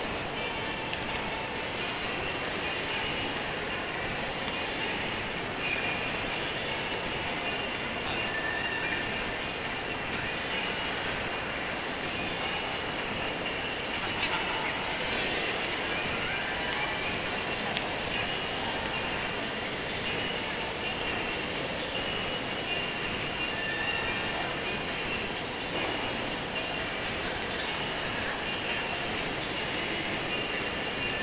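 Steady background hubbub with faint, indistinct voices and no distinct events.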